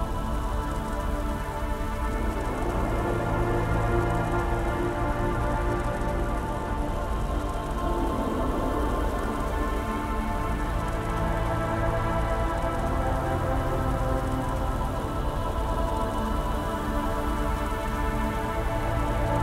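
Dark ambient music: a slow synth drone of sustained tones layered with a continuous, rain-like industrial noise texture, steady throughout.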